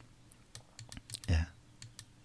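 Faint, irregular clicking of computer keyboard keys, about a dozen light taps spread across two seconds, with one short spoken word ("yes") just past the middle.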